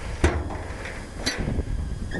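Chevrolet Chevelle's trunk lock being worked by hand and the trunk lid unlatching: a sharp click about a quarter second in, then a lighter click about a second later.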